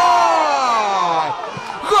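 Spanish-language football commentator's voice in one long, excited drawn-out call that falls steadily in pitch as the shot goes in. Right at the end he starts a held "¡gol!" shout.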